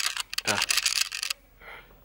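Rapid clicking rattle from two loose little bars on the sides of a handheld camera, shaking as it is held and picked up by the camera's own microphone; it stops about a second and a half in. It is an annoying fault of the camera body.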